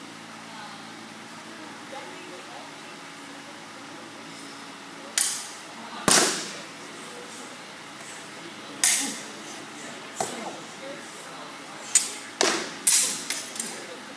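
Stage-combat sword and shield strikes: about nine sharp clashes, the first about five seconds in, the loudest a second later with a brief ring, and a quick run of hits near the end.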